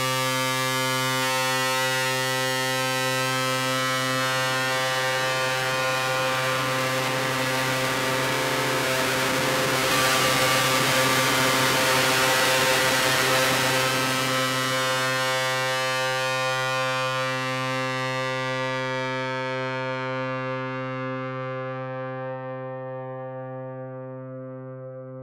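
Electropop track ending on one long held synthesizer chord with a distorted hiss over it. The hiss swells about ten seconds in, then the chord slowly fades out.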